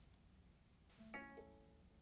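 Near silence, broken by one faint, short chime from the Baby Lock Radiance sewing machine about a second in. The chime is several notes together and rings out over about half a second while the touchscreen loads its buttonhole guideline settings.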